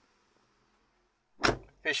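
A car door being shut: a single thud about one and a half seconds in.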